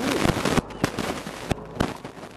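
Crackling and popping from an external microphone that is not properly plugged in: a dense crackle for about half a second, then a few separate sharp pops.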